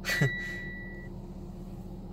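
A single high warning chime from the Mitsubishi Lancer Ralliart's instrument cluster, lasting about a second, set off as the ECU is read over the diagnostic port and the dash cycles through warning lights; a steady hum runs underneath. A brief vocal sound, like a short laugh, comes right at the start.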